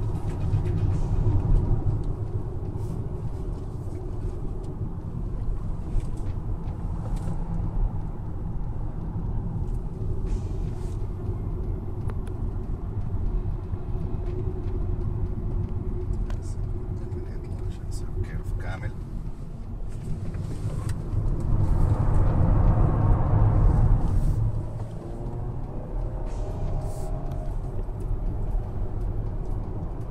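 Inside the cabin of a 2015 Hyundai Sonata being driven on a racetrack: steady engine and road rumble, which swells louder for about three seconds some two-thirds of the way through, as under harder acceleration.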